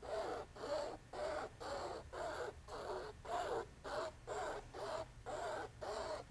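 Clay sculpting tool scraping through tar gel medium on a stretched canvas in quick back-and-forth strokes, about three short scrapes a second.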